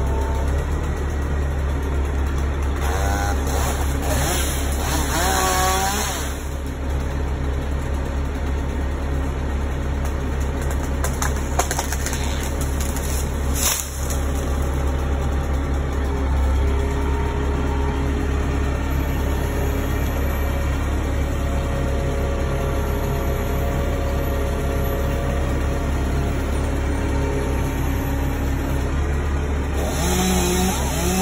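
Bucket truck's engine running steadily, a constant low hum that drives the aerial lift.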